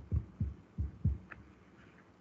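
Dull low taps of hands working at a computer, heard through the video-call microphone: two close pairs about a second apart, then a fainter click.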